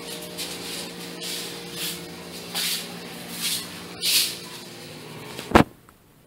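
A steady low mechanical hum with soft rustling swells every second or so, cut off by a single sharp click near the end.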